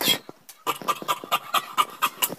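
Large tailor's shears cutting through cloth on a table: one louder cut at the start, then a quick, even run of snips, about six a second, from about half a second in.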